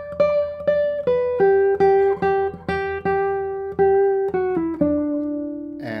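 Michel Belair double-top classical guitar with nylon strings, played fingerstyle: a phrase of plucked notes, several repeated at the same pitch, stepping down to a lower note that rings out near the end.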